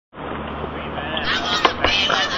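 A high-pitched call, like a person's voice, over steady outdoor noise, starting about a second in, with two sharp clacks just before the end.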